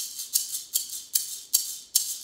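A small maraca shaken in an even rhythm, about two and a half shakes a second, each shake a short, crisp rattle.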